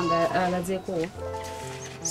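A brief spoken exclamation in the first second, over background music with steady held notes that carry on to the end.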